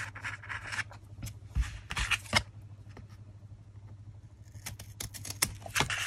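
Scissors snipping through brown kraft cardstock, trimming a corner off a tag, with the card being handled. A few sharp snips come in the first couple of seconds and a quick run of them near the end, with a quieter stretch between.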